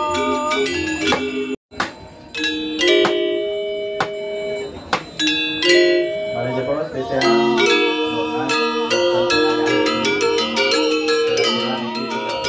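Balinese gender wayang ensemble: bronze-keyed metallophones over bamboo resonators, struck with disc-headed mallets, playing fast interlocking figures whose notes ring and overlap. The sound cuts out for a moment a little under two seconds in, then the playing resumes.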